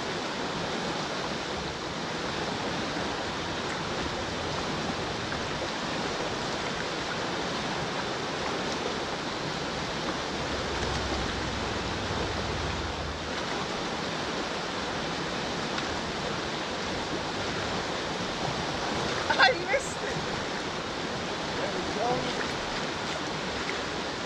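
Steady rushing of a fast-flowing river current around a wading angler, with a brief, sharp louder sound near the end.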